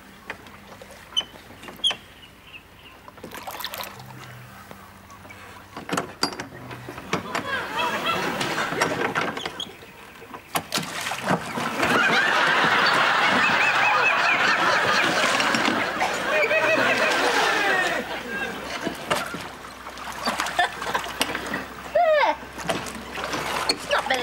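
Wooden oars splashing and knocking in their rowlocks as a rowing boat is pulled along. Then a long swell of studio audience laughter, building from about a third of the way in, loudest around the middle and slowly dying down.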